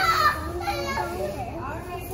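Young children playing, with a high-pitched shout at the start, then quieter voices.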